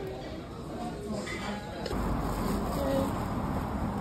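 Indistinct background voices in a restaurant dining room. About halfway through, the sound changes abruptly to outdoor noise with a steady low rumble.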